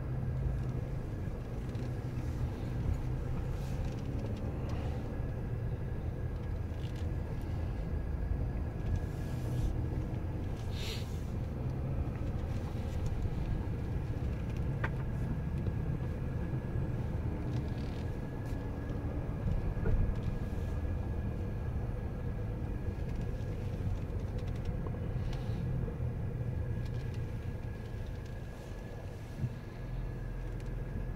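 Dodge Grand Caravan minivan driving slowly, heard from inside the cabin: a steady low rumble of engine and tyres, easing off slightly near the end as the van slows at the wash entrance.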